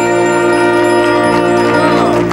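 A loud, sustained musical chord with a bell-like ring, many notes held steadily, starting to fade near the end.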